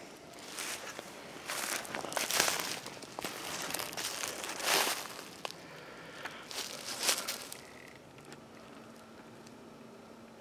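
Footsteps crunching through dry leaf litter, an uneven series of steps that dies away about eight seconds in, leaving only a faint steady hum.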